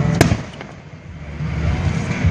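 A firework shell bursting overhead: one sharp bang just after the start, with a short trailing echo.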